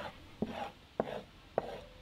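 A metal trowel scraping through loose soil in three short, evenly spaced strokes, about one every half second.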